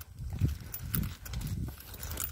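Footsteps of a person walking over dry grass and soil: soft, low thuds about twice a second with light rustling between them.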